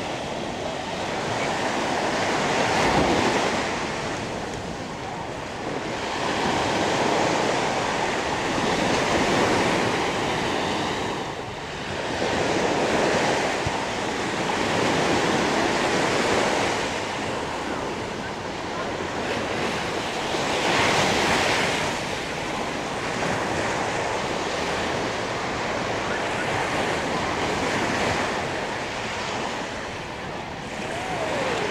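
Small waves breaking and washing up on a sandy beach, the surf swelling and easing every few seconds.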